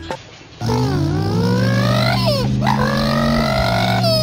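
A small dog howling, its pitch gliding up and down in long wavering calls, starting about half a second in, with a steady low drone under it.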